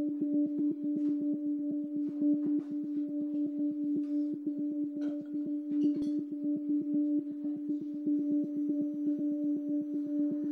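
A steady, held musical drone on one low pitch, with an even pulsing beat underneath at about six pulses a second. A few faint clicks are scattered over it.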